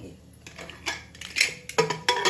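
Metal lid of an inner-lid pressure cooker clinking and knocking against the pot's rim as it is fitted in to close the cooker, with several sharp knocks in the second half.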